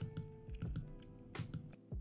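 A few quiet clicks of computer keys, spread through the pause, over faint background music of held notes.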